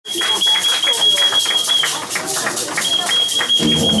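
Club concert crowd voices and noise, over a steady high-pitched tone that breaks off about halfway and comes back. Near the end the band's music comes in with low drums.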